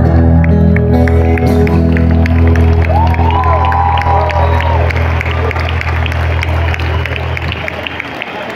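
A live band's final chord held under an arena crowd cheering and applauding. The chord cuts off near the end, leaving the crowd noise.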